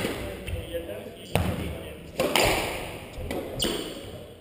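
Squash ball struck by rackets and hitting the court walls during a rally: several sharp impacts about a second apart, echoing in the enclosed court.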